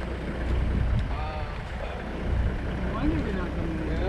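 Low, steady rumble of a parked safari vehicle's engine idling, with faint voices murmuring twice.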